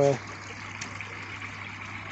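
Steady trickle and splash of water flowing into the koi pond from its return outlets, with a low steady hum underneath.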